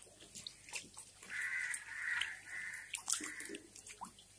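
Fish feeding at the surface of a biofloc tank: scattered small splashes, pops and clicks as they take feed pellets. From about a second in, a repeated high call sounds four times in a row for about two seconds.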